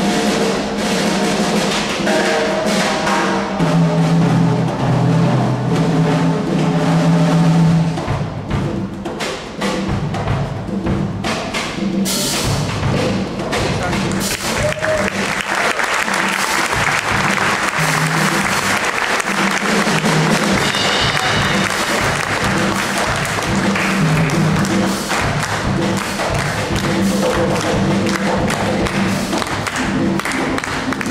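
Large cello ensemble with a drum kit playing: sustained low cello melody for the first several seconds, then a busier section with the drums keeping a steady beat under the strings.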